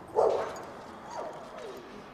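A dog barking: one loud, short bark about a quarter-second in, then two fainter calls that fall in pitch.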